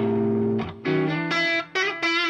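Electric guitar played through a Bogner Mephisto 1x12 combo amp with an Electro-Harmonix Memory Man delay: a held chord for about half a second, a short break, then a few shorter notes.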